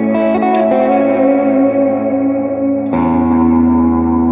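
A Fena TL DLX90 electric guitar with P90 pickups being played: a few quick notes over held notes, then a new chord rings out about three seconds in.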